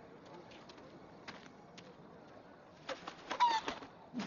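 Faint background with a few scattered small clicks; about three seconds in, a brief burst of rustling clicks and a short rising bird-like call.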